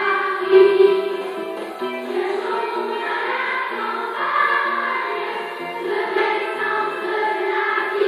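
Children's choir singing with instrumental accompaniment, a bass line moving in short steps underneath.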